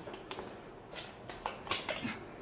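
Quiet handling of plastic stationery and packaging: a few light clicks and rustles as small items are unwrapped and plastic folders are moved.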